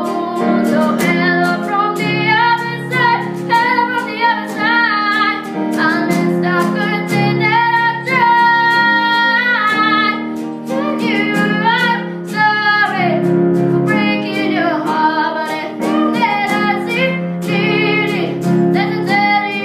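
A boy singing a slow ballad with chords played on a Yamaha CP50 stage piano; he holds one long note about eight seconds in.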